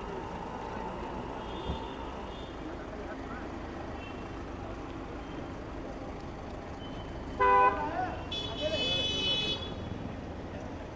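Steady street and traffic noise, cut through by a short car-horn toot about seven and a half seconds in, followed by a shriller high tone lasting about a second.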